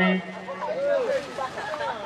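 A man's amplified voice trails off at the very start, then several people chatter at once, with overlapping voices and no single speaker standing out.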